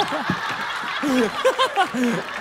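A group of people laughing together: short, repeated chuckles and giggles from several voices at once.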